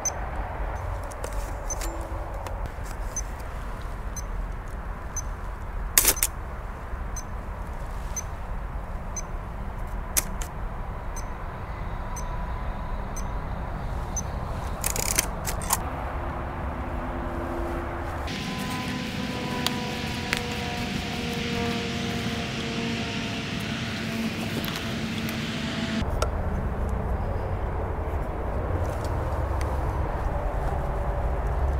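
A metronome ticking about once a second to time a long exposure on a Mamiya RB67 medium-format camera, with a sharp shutter click about six seconds in and a second about four seconds later as the four-second exposure closes. Another click follows near the halfway point, then a steady engine hum from a passing vehicle for several seconds.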